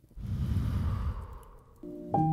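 One long breath blown out at the flame of a burning piece of paper, with the rush of air rumbling on the microphone. Piano-like music begins just before the end.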